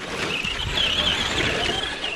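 Traxxas RC car running close by on a dirt track: a high, wavering motor whine over the rough noise of tyres on dirt, growing louder in the first half second.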